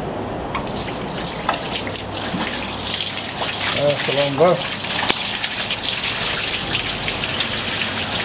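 Oil jetting from a hand-held hose nozzle and splashing over the contacts of a 1960s Fuller EH317P33 on-load tap changer, then pouring off into the tank: a flush to clean the contact mechanism. The hiss and splatter build up about half a second in and carry on steadily.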